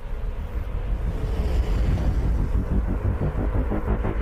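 Deep, steady low rumble of trailer sound design, swelling a little in the first second.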